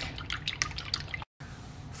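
Fork whisking a runny egg mixture in a ceramic bowl: quick, irregular clicks of the tines against the bowl with the liquid splashing, cutting off suddenly a little past a second in.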